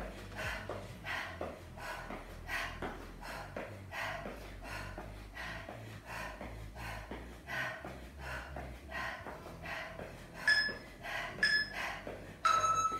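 A woman's heavy rhythmic breathing during a high-intensity cardio interval, a short forceful breath about every half second or so in time with the exercise. Two short electronic beeps sound near the end, typical of an interval timer's final countdown.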